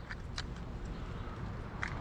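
Faint outdoor background noise with a few light clicks.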